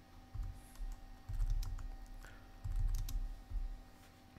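Typing on a computer keyboard: irregular key clicks with dull low thuds as keys are struck.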